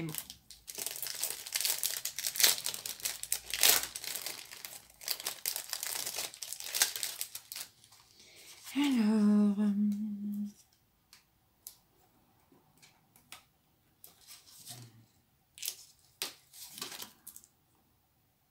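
Plastic packaging sachet crinkling and tearing as it is opened and its contents pulled out, dense for the first eight seconds, then only a few scattered rustles. A person hums a short held note about nine seconds in.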